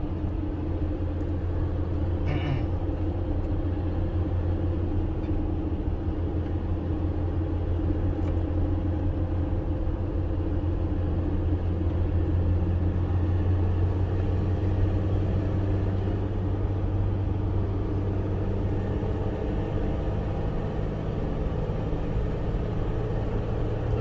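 Steady low drone of a car's engine and tyres on the road, heard from inside the cabin while driving.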